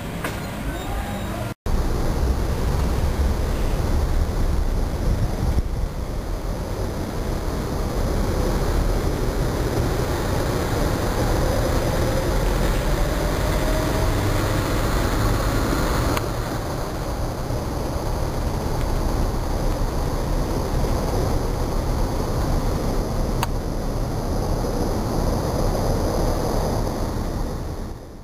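Steady low rumble of road and vehicle noise, broken by a brief dropout about a second and a half in.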